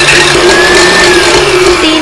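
KitchenAid tilt-head stand mixer running with its wire whisk, a steady motor whine at even pitch, whipping an egg white to a light foam.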